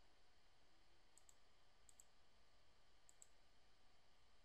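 Near silence with faint computer mouse clicks: three quick pairs of clicks, about a second apart.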